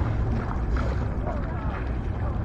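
Wind rumbling on the microphone, with faint voices of a group of people out on the water.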